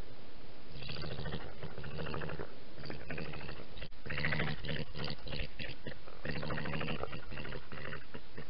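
A badger's low, rapidly pulsing churr or purr, coming in bursts of one to two seconds with short breaks between them.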